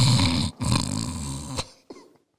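A man imitating a snore with his voice: one drawn-out rattling snore that fades out after about a second and a half.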